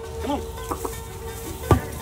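An American crocodile's jaws snapping shut on a rat held out to it: one sharp, loud clap near the end.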